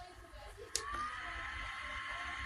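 Small portable neck fan's electric motor whining steadily; a click about three-quarters of a second in is followed by the whine rising in pitch and growing louder, then holding steady, as the fan speeds up.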